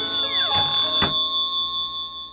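Ringing chime-like tones: a high note held steady throughout, several notes sliding down in pitch, and a second strike about a second in.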